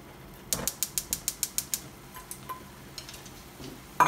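Gas stove burner's spark igniter clicking rapidly as the burner is lit: a quick run of about ten sharp clicks, roughly eight a second, starting about half a second in and stopping after just over a second.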